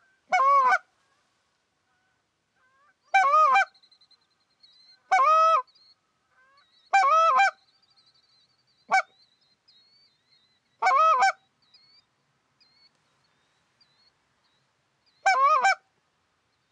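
Canada goose call blown by a hunter: a series of loud, clipped honks and clucks in short groups every two seconds or so, with a longer pause near the end. Fainter honking of distant geese sounds between the calls.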